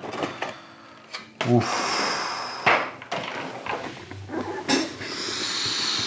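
A thin clear plastic cover sheet over a board-game miniatures tray crackling and rustling in uneven spurts as it is handled and peeled off.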